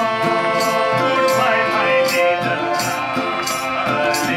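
Live Nepali folk music: a harmonium holding steady chords, hand drums keeping a steady beat, and a voice singing over guitar.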